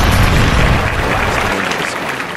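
Volcanic eruption sound effect: a loud, deep rumbling blast that eases off after about a second and a half.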